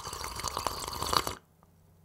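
Sparkling water fizzing in a glass: a fine crackle of many tiny bubble pops that stops abruptly about one and a half seconds in.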